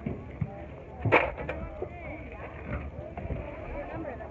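Faint voices talking in the background over a steady low rumble, with a sharp knock about a second in.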